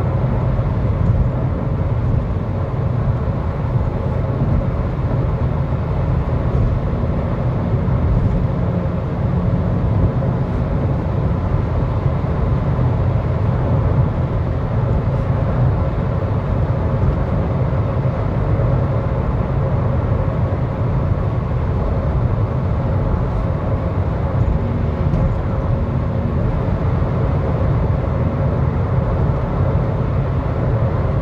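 Steady road and engine noise heard from inside a Honda Civic's cabin while it cruises on the highway: an even low rumble of tyres and engine that does not rise or fall.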